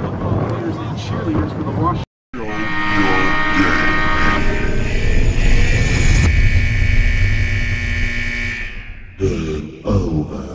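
Voices on a football field for about two seconds, then an abrupt cut to a loud electronic intro sound: a sustained synth drone with many held tones over a deep rumble, fading out about nine seconds in, with electronic music starting near the end.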